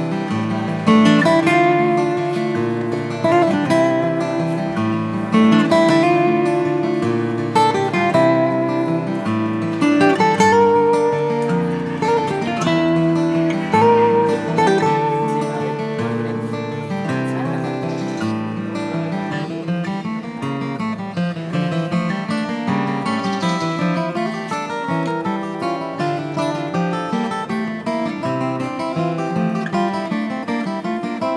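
Background music: an acoustic guitar, plucked and strummed, playing a melody.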